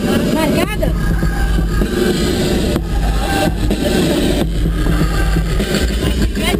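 Several people's voices chattering and calling out inside a moving limousine's cabin, over a steady low rumble.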